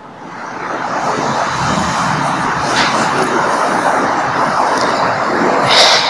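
Audience applause, swelling over about the first second and then holding steady, with a brief louder burst near the end.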